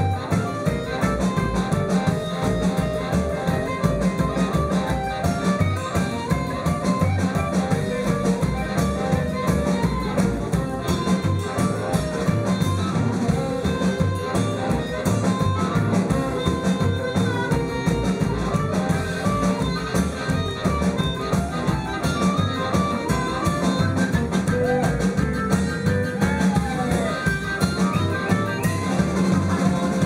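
Live rhythm-and-blues band playing an instrumental break, with a blues harmonica playing the lead over electric guitar, upright bass and drums. The beat is steady.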